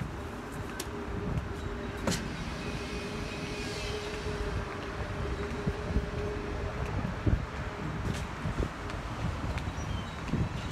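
Street traffic: a passing car's steady hum that stops about seven seconds in, over wind rumbling and gusting on the microphone.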